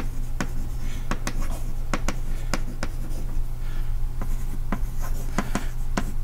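Chalk writing on a blackboard: irregular sharp taps and short scratchy strokes, several a second, with a pause in the middle, over a steady low hum.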